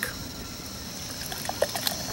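Oatmeal imperial stout poured from a 12-ounce aluminium can into a glass beer mug: a soft, steady trickle of liquid with a few small glugs in the second half.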